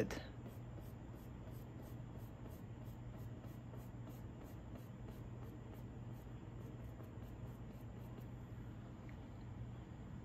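Faint strokes of a fine paintbrush on a canvas panel, over a steady low hum and a faint, even high ticking a couple of times a second.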